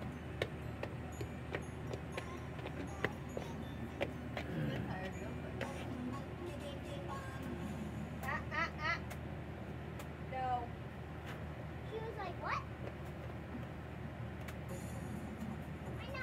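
Faint, indistinct voices from elsewhere in the house over a steady low background hum, with a few light knocks in the first four seconds.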